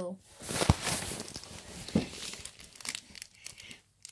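Plastic sweet wrapper crinkling and crackling in the hands as it is handled and squeezed, in irregular bursts with a couple of louder crackles about a second and two seconds in.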